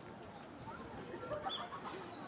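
Outdoor park ambience of faint, distant voices, with a bird giving a short high call about one and a half seconds in.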